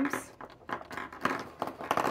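Speech only: a woman's voice trailing off at the start, then soft, breathy, half-voiced sounds between words.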